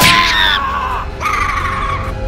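A thud as the kick lands, then a high scream that falls in pitch, then a second, steadier high scream about a second in. This is the comic screech of the kicked stuffed raccoon as it flies.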